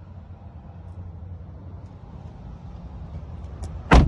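Rear passenger door of a 2021 Hyundai Tucson slammed shut, one loud thud near the end, over a steady low rumble.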